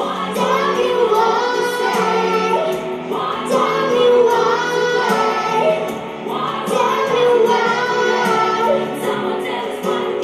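A young girl singing a pop song into a handheld microphone over instrumental accompaniment, in long held melodic phrases.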